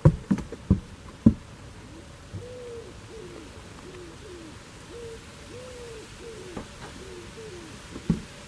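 A pigeon cooing: a run of about ten soft, low coos, each rising and falling in pitch, starting about two seconds in. Before them come a few sharp knocks at the start.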